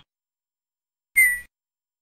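Tux Paint's built-in sound effect from the stamp tool: one short whistle-like tone that falls slightly in pitch, about a second in.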